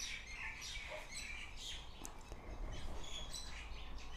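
Birds chirping faintly in the background, a scatter of short high chirps over a low room hum.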